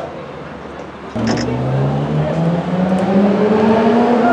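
A motor vehicle engine comes in loud about a second in, and its pitch climbs slowly and steadily as it accelerates.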